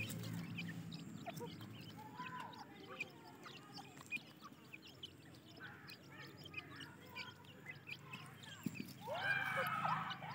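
Grey francolin chicks peeping as they forage beside the hens: many short, high calls throughout, with a louder run of falling calls about nine seconds in.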